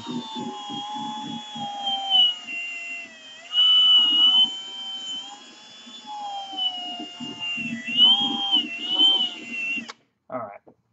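Milwaukee cordless drill spinning a buffing wheel against fresh paint on a steel toy trailer. The motor whine sags and rises as the trigger and pressure change, louder in two stretches, with a rubbing rhythm underneath. It stops abruptly at the end.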